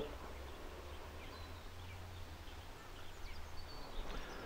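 Quiet outdoor ambience: a steady low hum with a few faint, distant bird chirps.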